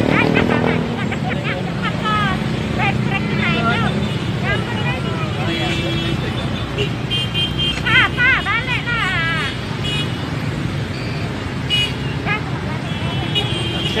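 Street noise: people's voices calling out and talking over running motorbike and vehicle engines, with a few steady horn toots.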